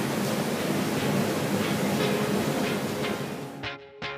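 Steady hiss of background room noise, which drops away near the end as plucked guitar background music comes in.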